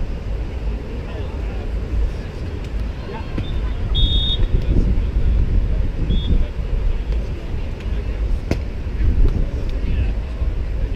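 Wind rumbling on the microphone over distant voices at a beach volleyball court. A short, shrill referee's whistle sounds about four seconds in, signalling the serve, and a single sharp smack of a hand on the volleyball near the end marks the serve being struck.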